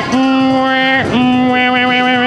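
A loud 'aaah' held at one steady pitch in three long notes, with two brief breaks about a second apart. The room's background noise drops out while it sounds, as with a dubbed-in effect.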